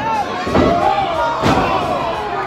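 Two heavy thuds in a wrestling ring, about a second apart, over a crowd shouting.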